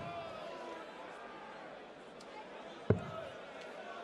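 A steel-tip dart hits a Unicorn bristle dartboard once, with a single sharp thud about three seconds in, over the low murmur of an arena crowd.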